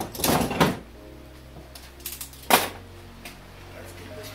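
Metal clamps and wood being handled on a workbench: a rustling clatter in the first second, then a single sharp knock about two and a half seconds in, over a low steady hum.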